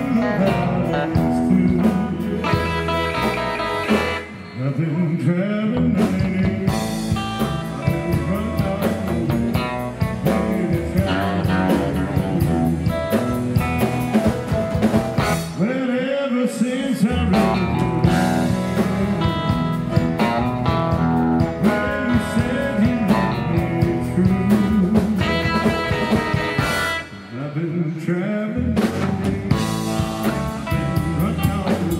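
A live band playing: acoustic and electric guitars, drum kit and a lead vocal. The bass and drums drop out briefly about four seconds in and again near the end.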